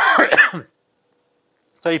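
A man clearing his throat once, a burst about a second long at the start, then silence until his voice starts speaking near the end.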